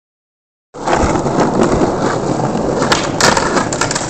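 Skateboard wheels rolling over rough, jointed paving stones: a loud, steady rumble that starts suddenly under a second in, with several sharp clicks near the end as the wheels cross the seams.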